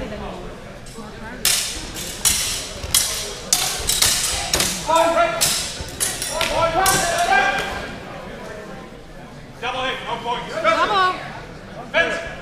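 A quick, irregular run of sharp knocks, about a dozen over some five seconds, as two fencers exchange sword strikes, with voices calling out among them. A man's voice calls out again near the end.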